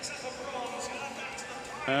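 Low, even background ambience of an indoor swimming arena, with faint distant voices; a commentator's voice begins near the end.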